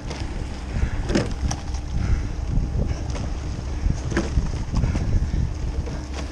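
Rowing shell under way at a low rate of about 19 strokes a minute: the oars knock in their oarlocks about every three seconds over a steady rumble of wind on the microphone.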